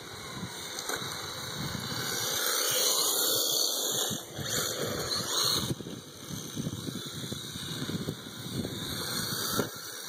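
Remote-control drift car's motor whining, its pitch rising and falling with the throttle, loudest a few seconds in, over a low rumble of wind on the microphone.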